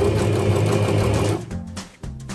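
Domestic electric sewing machine running a fast burst of stitches as it sews an elastic waistband onto fabric, stopping about one and a half seconds in.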